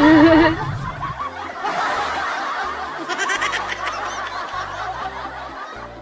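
Women laughing and giggling over background music with a stepped bass line that comes in about a second in.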